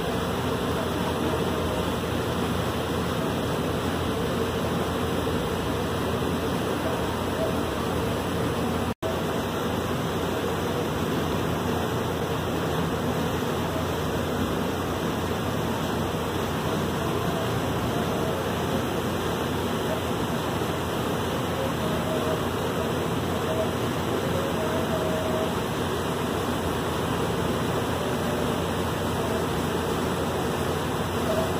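Steady rushing noise aboard a boat under way: the drone of its engine mixed with water rushing along the hull. The sound cuts out for an instant about nine seconds in.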